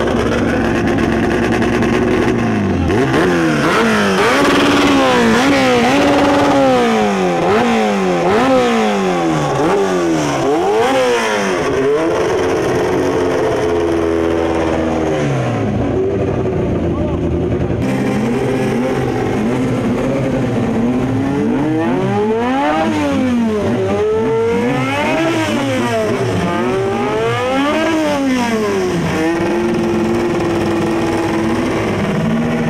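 Midget race car engines revved over and over, the pitch climbing and dropping about once a second, between stretches of steady idling.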